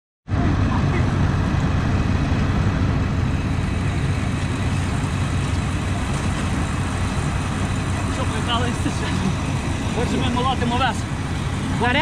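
Combine harvester engine running as a steady low rumble. Faint voices call out near the end.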